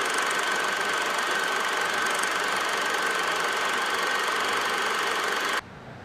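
Film projector sound effect: a steady mechanical running clatter with a thin hiss, playing under a countdown-leader transition and cutting off abruptly about five and a half seconds in.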